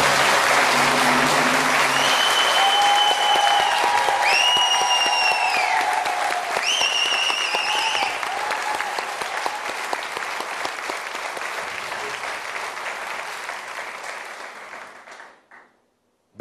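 Studio audience applauding loudly after a correct answer, with a few long high held tones over the clapping in the first half. The applause fades away near the end.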